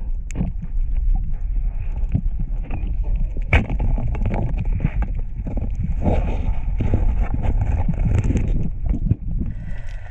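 Underwater speargun shot heard through a diving camera: a sharp snap and scattered clicks over a constant low rumble of water noise.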